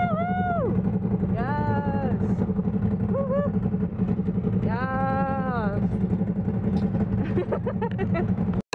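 A side-by-side UTV's engine running with a steady low drone as the vehicle moves off. Over it are four high, drawn-out vocal cries.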